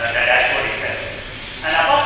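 A man speaking, delivering a presentation talk through a microphone at a podium.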